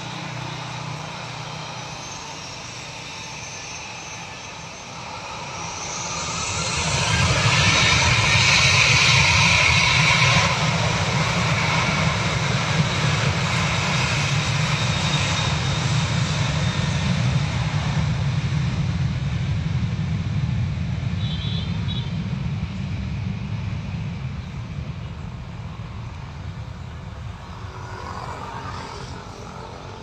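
Lion Air Boeing 737 jet engines spooling up to takeoff thrust about five seconds in, swelling to a loud roar with a strong hiss as the takeoff roll begins. The roar then holds and slowly fades as the airliner speeds away down the runway.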